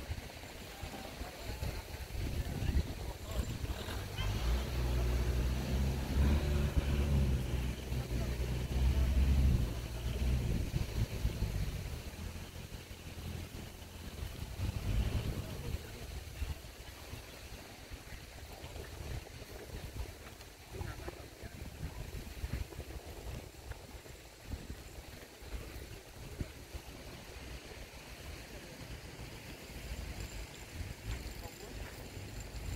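A motorboat engine running with a steady low hum for several seconds, loudest about nine seconds in, then fading away. Outdoor beach ambience, with faint wind and surf, fills the rest.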